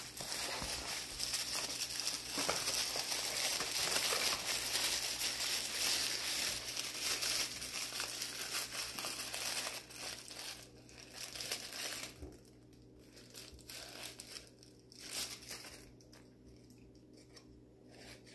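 Paper wrapping crinkling and crumpling in the hands as a stone is unwrapped from a small gift box, dense for about the first ten seconds, then thinning to a few soft rustles.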